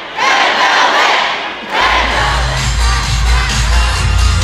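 A large crowd of concert fans screaming and cheering, then loud pop music with a heavy bass beat starts a little under two seconds in, the screaming carrying on over it.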